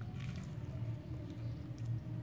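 A person biting into and chewing a fried banana fritter in crispy batter: soft, wet chewing sounds with a few faint clicks near the start and end, over a steady low hum.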